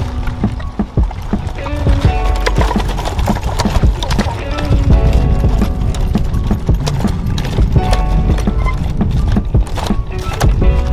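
Wooden handcart clattering and knocking over the road surface as it is pushed, with music playing over it.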